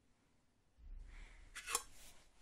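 Handling noise from a handheld phone being moved: a low rumble starts about a second in, with one short, sharp noise just before the end.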